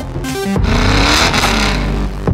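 A car engine revving loudly over background music, coming in about half a second in.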